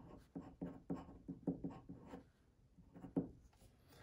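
Glass dip pen scratching on paper as a word is written: a run of short, faint strokes, several a second, with a brief pause a little past halfway before the last few strokes.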